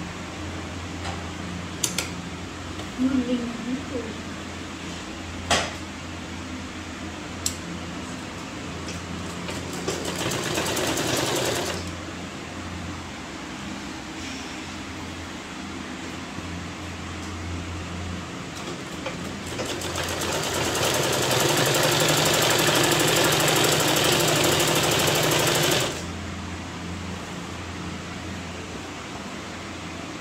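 Sewing machine stitching in two runs: a short run about ten seconds in and a longer run of about six seconds near the twentieth second, each a fast, even chatter of stitches. A low steady hum lies underneath, with a few sharp clicks early on as the fabric is handled.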